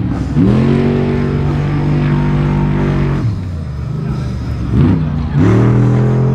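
Trophy truck engine revving: its pitch climbs and holds high for about three seconds, falls away, then climbs and holds again near the end as another truck comes through.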